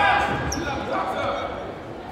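Echoing gymnasium ambience: distant voices and chatter in a large hall, with a few dull thuds in the first half second, fading off gradually.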